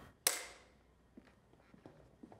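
A film clapperboard's hinged stick snapping shut: one sharp clap with a short ring of room reverberation after it.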